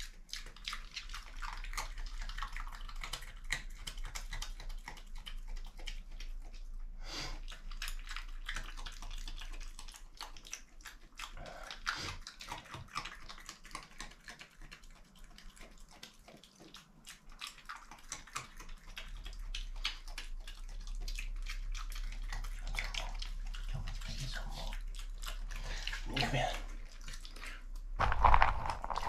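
Eurasian badger eating food off the floor: a constant run of fast crunching and chewing clicks, quieter for a few seconds in the middle.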